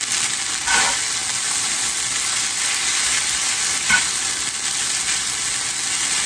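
Spaghetti sizzling in a skillet with bacon, bacon fat and garlic, a steady sizzle, while it is tossed with tongs, with a couple of faint ticks.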